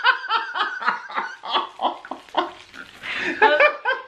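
A small group laughing together in quick, even pulses of about five a second, the laughter growing louder and higher in the last second.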